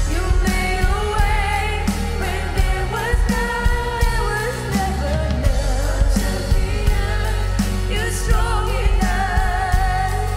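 Live contemporary worship song: women singing a sustained melody, backed by a full band with guitars, bass, keyboard and a steady drum beat.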